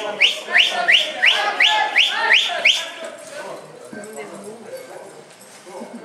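A quick run of about eight short whistles, each sliding upward in pitch, at roughly three a second. They stop about three seconds in, leaving the murmur of voices in a large hall.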